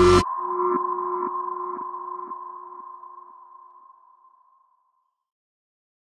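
The tail of a logo sting: the music cuts off sharply, leaving a high synth tone and a lower one ringing out with an echo repeating about twice a second, fading away over about four seconds.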